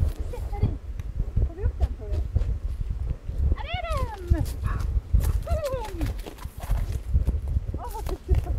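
Footsteps thudding on snow, with a dog giving high whining cries that fall in pitch, two longer ones in the middle.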